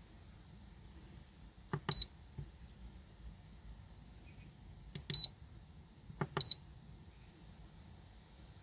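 Simrad AP44 autopilot controller keypad being pressed three times, each press a click followed by a short high beep: once about two seconds in, then near five seconds, and again a second later.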